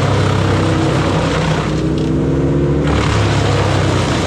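Bandit wood chipper chewing up leafy brush fed in by an excavator grapple, a loud rushing, crackling shredding over the steady running of diesel engines. The chipping eases for about a second two seconds in, then picks up again as more branches are drawn in.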